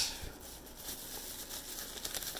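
Faint crinkling and rustling of a plastic bubble-wrap pouch being handled and opened.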